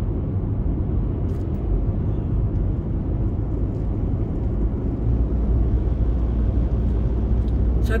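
Steady low rumble of road and engine noise heard from inside a car's cabin while driving at highway speed. The deepest part of the rumble grows a little stronger about five seconds in.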